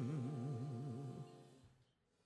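A male singer holds a sustained note with a slow, even vibrato, backed by a big band. It fades away and dies to silence near the end.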